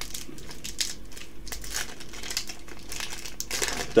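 Foil wrapper of a Yu-Gi-Oh booster pack being torn open and crinkled by hand, a run of irregular crackles.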